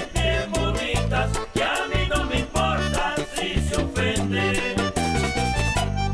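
Vallenato serenade played on accordion with bass and percussion, an instrumental passage with a steady beat and no singing.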